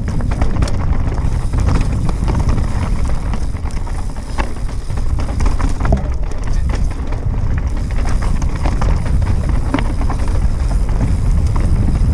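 Mountain bike descending a rocky singletrack at speed: loud wind rumble on the microphone, with the tyres crunching over loose stones and frequent clicks and rattles from the bike.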